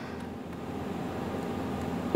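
Steady room noise: an even hiss with a faint low hum, rising slightly.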